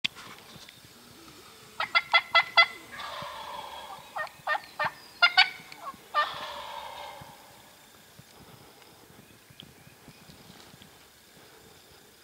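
Wild turkey tom gobbling: several rapid, rattling gobbles between about two and seven seconds in, each trailing off, then quiet woods.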